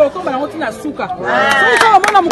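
Several people talking at once close by, a jumble of overlapping voices that gets louder a little over a second in.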